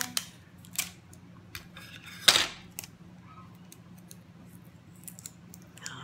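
Paper cookie cutouts being handled and put onto a glass jar: scattered light clicks and rustles, with one loud short rasp about two seconds in.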